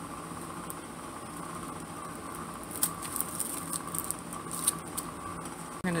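Paper and tulle being handled on a tabletop: soft rustling with scattered light ticks from about halfway through, over a steady low hum.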